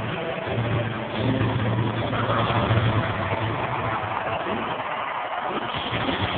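Monster truck engines running, a low steady rumble under a dense roar of crowd noise in a large arena.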